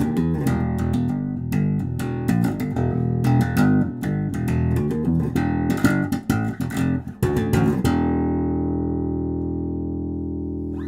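Electric bass guitar (a Gibson Victory bass) played solo, plucking a quick riff of short notes, then a last note left ringing and slowly fading from about eight seconds in.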